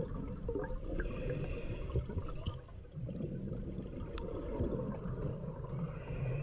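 Muffled low rushing and gurgling of fast-flowing water, heard underwater through a camera housing: the strong current pouring out of a spring cavern.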